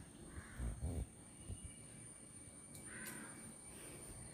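Faint, harsh calls of a bird, twice: about half a second in and again around three seconds. Low bumps come around the first call.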